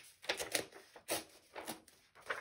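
Pages of an old hardcover book being turned by hand: four quick papery flips and rustles.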